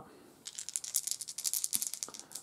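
A handful of dice clicking together as they are gathered up and shaken in the hand: a quick, uneven run of small clicks starting about half a second in.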